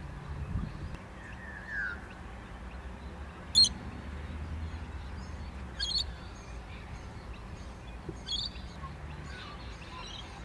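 Wild birds calling outdoors: a short falling call early on, then three sharp, high chirps spaced a couple of seconds apart, the first the loudest. A low steady rumble of wind and distant background lies under them.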